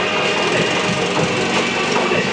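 Carnival parade street sound: music with a fast, steady rattling clatter.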